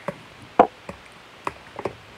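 A small cardboard box being handled as fingers pick at its tape seal: a handful of short sharp taps and knocks, the loudest about half a second in.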